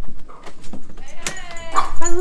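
Front door's lever handle and latch clicking as the door is opened, followed near the end by a high-pitched, drawn-out call.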